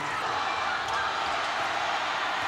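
Steady crowd noise filling a basketball arena just after a made three-pointer.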